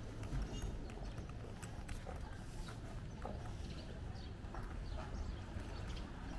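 Footsteps on pavement, irregularly spaced short clicks, over a steady low rumble of street noise.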